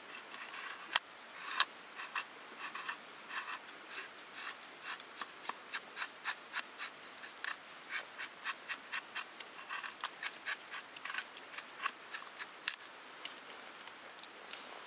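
A knife blade shaving thin curls down a wooden stick to make a feather stick for fire-lighting: a run of short scraping strokes, about two a second.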